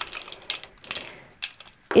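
Thin clear plastic pot crackling and clicking as a small orchid's moss-packed root ball is worked out of it by gloved hands, a run of quick irregular clicks over the first second and a half.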